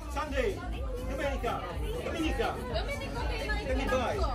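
Several people chatting at once, overlapping voices in conversation over a low steady rumble.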